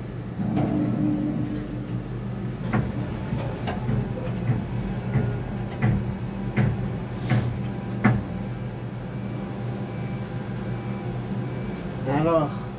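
Steady low hum of construction machinery, with scattered sharp clicks and knocks between about three and eight seconds in.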